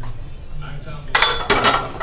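A 275 lb barbell loaded with cast-iron plates is racked onto a steel bench press's uprights: two loud metal clanks with ringing, about a third of a second apart, just over a second in.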